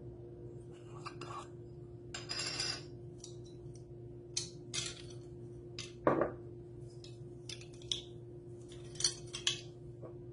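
A plastic measuring spoon handled against a spice jar and a stainless steel mixing bowl while ground cinnamon is measured out: scattered light clicks, a short scraping rattle about two seconds in, and a louder ringing knock on the bowl about six seconds in, over a faint steady hum.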